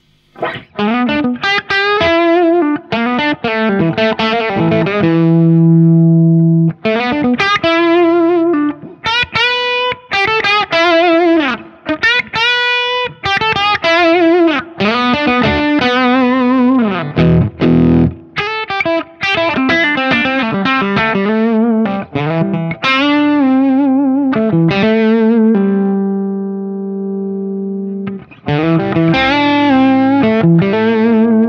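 Les Paul electric guitar through a Marshall JTM45 valve amp, overdriven, playing a blues-style lead phrase of single notes with string bends and vibrato, with a couple of long held notes. The guitar is played with its volume full up and picked hard.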